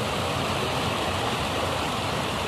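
Fast-flowing water rushing and churning past a fishing net held in a concrete-edged channel: a steady rush.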